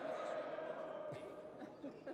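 Indistinct voices and general murmur of people in a large sports hall, fading a little after about a second and a half, with a few faint knocks.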